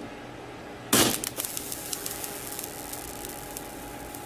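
A sudden loud bang or crash about a second in, followed by about a second of scattered crackles and clicks, over a faint steady hum.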